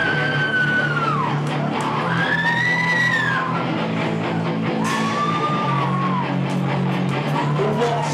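A rock band playing live, with electric guitars, bass and drums. Over the steady band sound, three or four long notes swoop up and back down.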